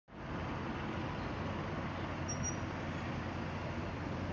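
Steady street traffic noise, an even rumble and hiss with no distinct events.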